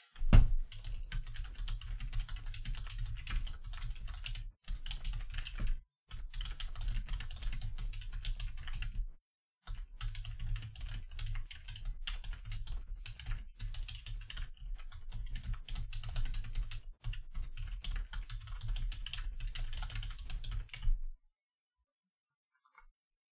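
Fast typing on a computer keyboard: rapid key clicks in bursts with a few short pauses, stopping about a second before the end.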